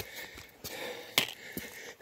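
Footsteps on a wet, rocky mountain trail, with the hard breathing of a hiker on a steep climb and a sharp knock a little over a second in.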